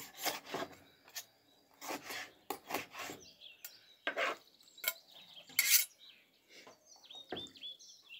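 Kitchen knife slicing through raw pike fillet and scraping on a plastic cutting board, in a series of irregular short strokes, the loudest about two-thirds of the way through. A bird chirps faintly near the end.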